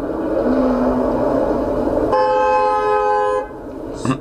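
A sports car draws closer, its engine and road noise growing louder, then its horn sounds once, a steady blare lasting just over a second.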